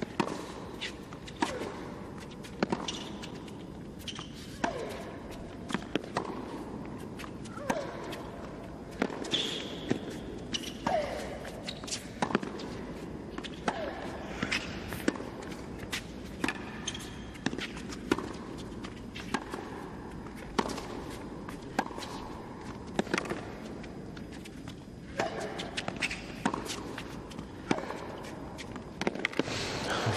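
Tennis ball struck back and forth by racquets in a long rally, a sharp hit about every second or so, with short falling squeals between the hits.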